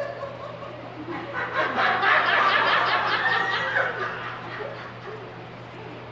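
Loud, high-pitched laughter in quick, even bursts, building about a second in, peaking around two seconds in and trailing off after four seconds, over a low steady electrical hum.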